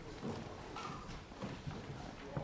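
A quick, irregular clatter of clicks from several press photographers' camera shutters, mixed with footsteps on the stage.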